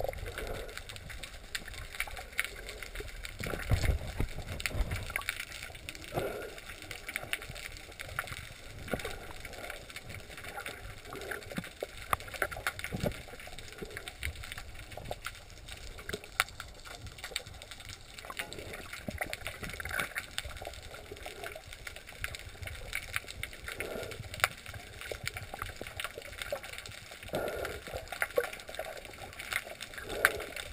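Underwater ambience: a low, muffled wash of moving water with scattered clicks and crackles throughout, and a few louder low thumps about four and six seconds in.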